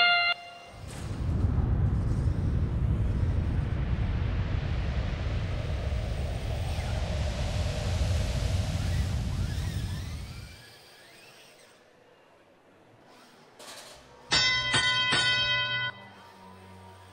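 FRC competition field audio cues at a match start: the tail of the start sound, then a loud low rumbling whoosh for about ten seconds that fades out. Near the end, a bright horn-like tone of about a second and a half plays, the cue marking the end of the autonomous sandstorm period.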